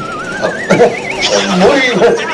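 A high, wavering whinny-like call that climbs in pitch over about a second, then stops, with speech around it.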